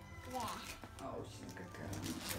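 A young child answers "yeah" in a high voice, over faint background music.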